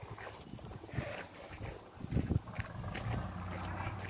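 Bulls moving about, with scattered short knocks and scuffs. A low steady hum comes in about three seconds in.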